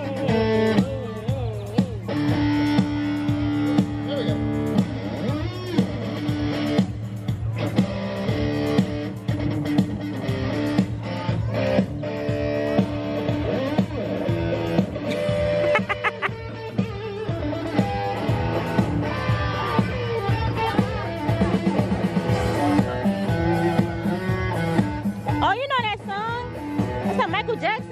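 Live one-man-band music: electric guitar played over a steady low didgeridoo drone, with voices mixed in.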